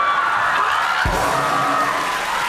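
Studio audience laughing, cheering and clapping over music, with a short low thump about a second in.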